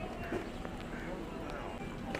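People talking in the background, with a few short knocking footsteps on steps, the sharpest about a third of a second in.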